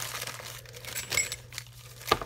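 Plastic wrapping crinkling in the hands as a packed item is unwrapped, with a few sharper crackles.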